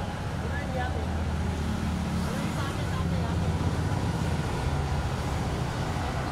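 Steady low rumble of street traffic, with indistinct voices in the background.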